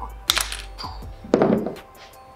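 A wooden popsicle stick being cut through with hand cutters: a sharp crack as the stick snaps about a third of a second in, then a duller knock about a second later, over background music.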